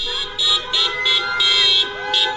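Several car horns honking together at different pitches, in repeated short blasts over a steady held horn, from a line of cars driving in procession.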